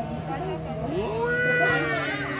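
People's voices, including one long, drawn-out call that rises and then slowly falls in pitch.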